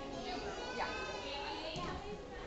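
Background chatter of young children's and adults' voices, with high-pitched children's calls among them.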